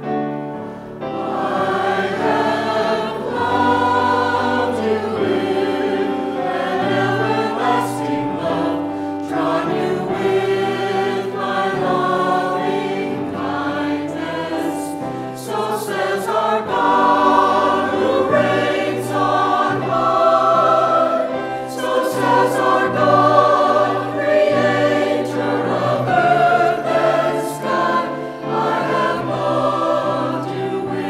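Mixed church choir of men and women singing a gospel-style anthem, sustained and continuous.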